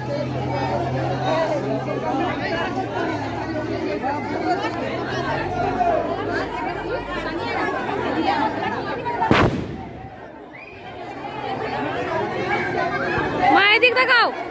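A group of women chattering and talking over one another close by. About nine seconds in a single sharp bang cuts through, followed by a brief lull before the chatter picks up again.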